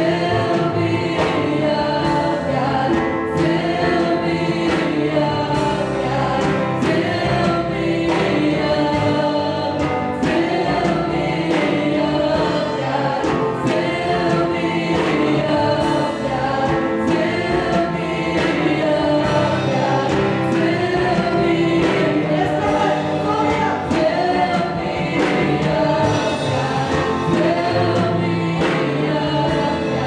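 Live gospel worship song: a woman leads the singing on microphone with backing singers and a band, over a steady beat.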